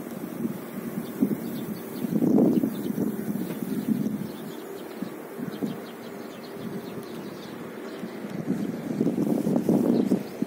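Wind buffeting the phone's microphone, coming and going in gusts, louder about two seconds in and again near the end.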